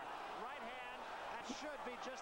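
Faint speech: a commentator's voice from the boxing broadcast playing in the background.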